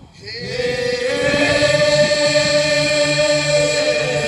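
Chanted group singing for a stage dance: one long note held steady, swelling in over the first second, over a lower pulsing drone.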